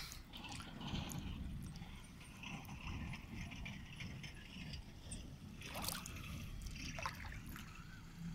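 Faint water sloshing and trickling around someone working in shallow water, with a couple of light knocks near the end.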